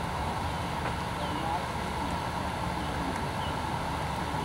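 Steady outdoor background noise on a camcorder microphone, with faint distant voices and a few faint high chirps.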